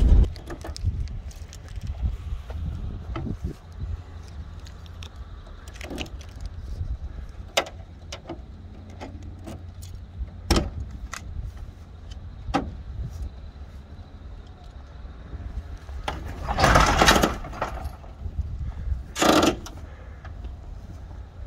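Clicks and clunks from the rear doors of a wheelchair-accessible van being worked, over a steady low rumble. Two louder clattering noises come near the end.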